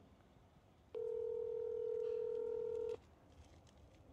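Telephone ringback tone from a mobile phone on speaker, as an outgoing call rings: one steady beep lasting about two seconds, starting about a second in and cutting off cleanly.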